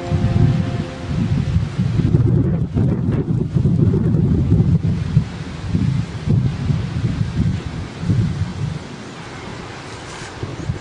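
Wind buffeting the camera microphone: a loud, gusting low rumble that rises and falls unevenly, with the last of a music track ending right at the start.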